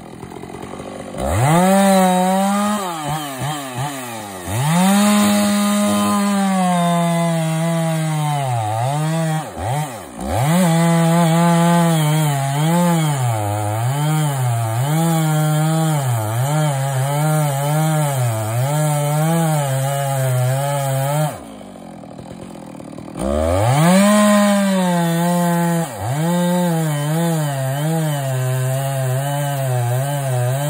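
Two-stroke chainsaw cutting into the trunk of a large tree: it starts at idle, revs up to full throttle about a second in, and its pitch sags and recovers again and again as the bar bites under load. It eases off briefly a few times and drops to idle for about two seconds past the middle before revving back up and cutting on.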